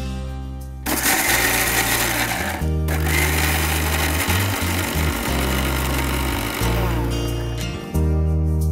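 Electric mixer grinder running in two bursts, grinding chutney: a short burst about a second in, then after a brief pause a longer run of nearly five seconds that cuts off just before the end. Background music plays underneath.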